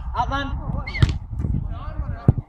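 Men talking and calling out, with one sharp thud about a second in: a football being kicked hard.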